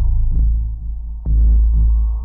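Deep, throbbing bass pulses, two of them about a second and a half apart, each starting with a click and slowly fading: a tense heartbeat-like suspense beat added in the edit.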